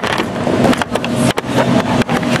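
Small plastic shopping cart rolling across a store floor, its wheels and frame rattling with many small clicks.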